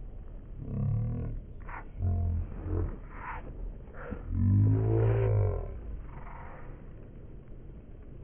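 A man's wordless vocalizing in three loud bursts, about one, two and four and a half seconds in, its pitch bending up and down, over faint steady outdoor background noise.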